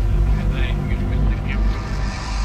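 Dark ambient music: a deep, steady low drone with an indistinct spoken voice sample over it, its words not made out.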